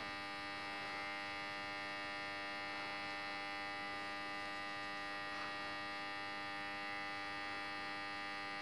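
Steady electrical hum, a faint even buzz made of many tones, unchanging throughout.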